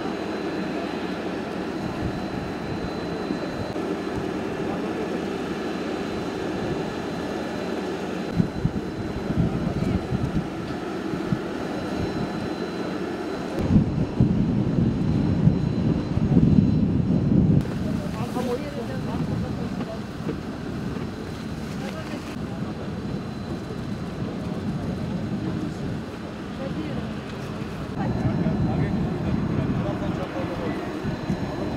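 Parked Airbus jet airliner running on the apron, a steady hum with a thin high whine, broken by irregular low rumbling gusts in the middle.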